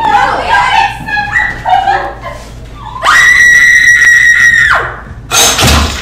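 A performer screams: one long, high scream held for nearly two seconds, after a stretch of excited voices. Near the end comes a short, loud burst.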